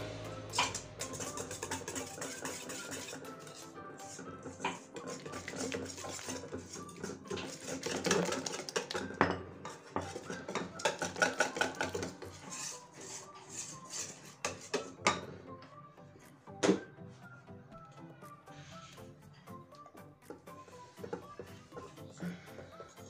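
Wire balloon whisk clinking and scraping against a stainless steel bowl while flour is beaten into a wet mix that thickens into a sticky dough. The clinks come irregularly, busiest in the middle, with one sharp knock later on, over background music.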